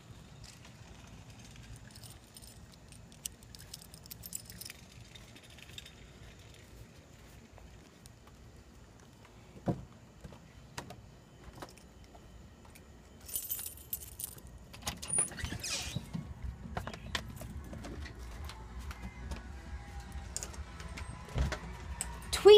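Faint rustling and scattered clicks from items being handled while walking, growing louder and busier from about halfway through.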